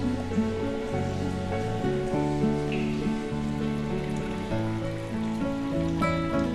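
Background music: a calm guitar piece of held notes changing in steps.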